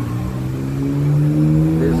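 A passing motor vehicle's engine running steadily, its pitch rising slowly as it accelerates.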